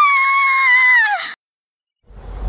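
A woman screams in horror: one long, high scream that rises, holds, then drops and breaks off a little over a second in.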